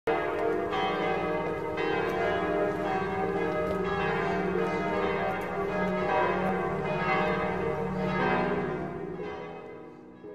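Church bells ringing, several bells struck one after another so that their tones overlap and hang, fading out near the end.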